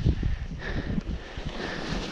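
Wind buffeting the camera microphone in uneven low gusts over a steady hiss of skis sliding on snow.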